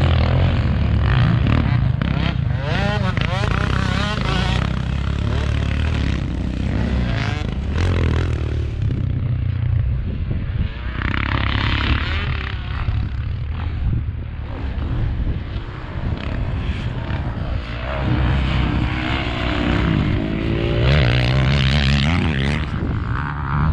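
Motocross dirt bike engines revving up and down as riders go round a dirt track, their pitch rising and falling with throttle and gear changes. The engines are loudest near the start and again near the end.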